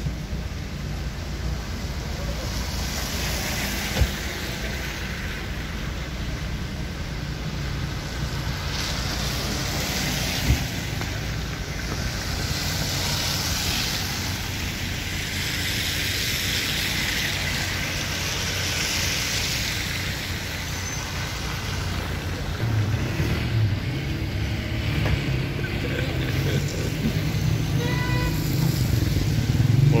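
A car on a wet, slushy street: steady road and tyre noise over a low engine rumble, the hiss swelling and fading several times, with two brief knocks about four and ten seconds in.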